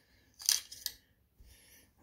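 A Mora knife and its plastic sheath being handled: a short scraping click about half a second in, then a couple of light clicks.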